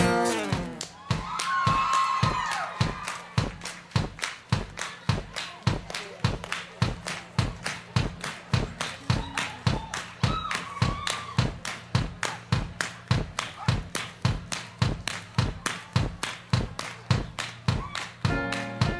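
Stripped-down breakdown of a live rock performance: a steady kick-drum beat with hand claps, about three strokes a second, over a faint low held note.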